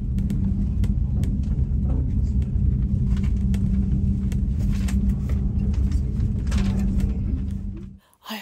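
Steady low rumble and hum inside an aerial tramway cabin as it rides the cable up the mountain, with a few faint clicks. It cuts off just before the end.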